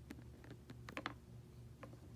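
A few light clicks and taps, several bunched together about a second in and one more near the end, over a low steady hum.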